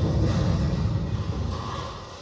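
A deep, low rumble from the exhibit's dramatic soundtrack, fading steadily away over the two seconds.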